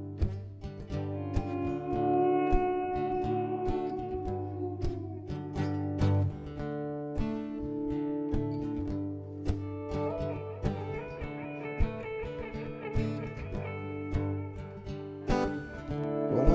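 Instrumental guitar intro from an acoustic guitar and an electric guitar playing together: steady plucked and strummed chords under long sustained lead notes, one of them held and bent slowly down in pitch over the first few seconds.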